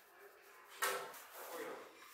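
Ground pistachio rubbed between gloved fingers and scattered onto dry phyllo sheets: a sudden crisp rustle a little under a second in that trails off, then a softer second rustle.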